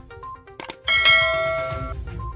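A mouse-click sound effect, then a bright bell chime that rings for about a second and cuts off suddenly: the notification-bell sound of a subscribe-button animation.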